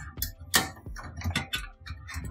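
Metal drive bracket holding an SSD sliding into the steel drive bay of a desktop PC case: a run of short scrapes and clicks, the sharpest about half a second in.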